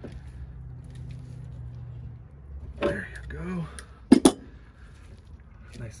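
Wrench tightening the brass flare nut of a flexible gas connector onto a furnace gas valve: light metallic clinks, with two sharp metal clinks close together about four seconds in.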